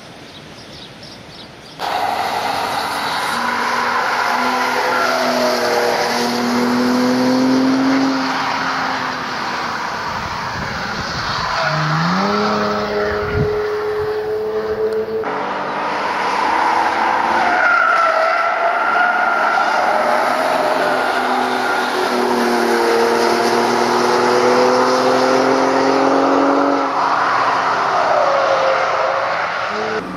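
Mercedes-Benz SLK prototype's engine accelerating hard through the gears, its pitch climbing and dropping back at each upshift. The engine sound cuts in sharply about two seconds in, and the recording changes again about halfway through, where a new climb begins.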